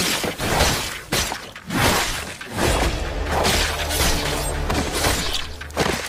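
Sword-fight sound effects from an action anime: a dense run of sharp metallic clashes, slashes and impacts following close on one another, with a low steady hum underneath from about halfway through.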